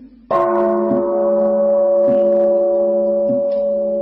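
A deep struck bell rings out about a third of a second in and keeps sounding, slowly fading, with soft regular taps a little over a second apart underneath.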